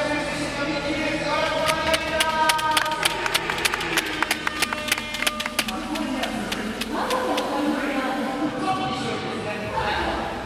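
Voices talking in a large hall, with a quick run of sharp handclaps, about four a second, in the middle.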